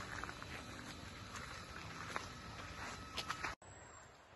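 Faint outdoor forest ambience with a few light clicks and taps over a steady low hiss. About three and a half seconds in, the sound drops out abruptly and then carries on quieter.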